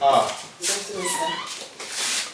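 Speech only: a woman's voice greeting "Good afternoon, sir."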